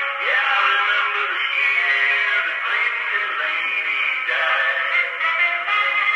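Country music played back acoustically by a cylinder phonograph through its flower horn. The sound is thin and boxy, with no bass and little top.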